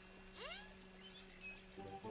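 Faint cartoon sound effects for a small hovering drone: a rising whistle-like chirp about half a second in, then a few short beeps near the end, over a low steady hum.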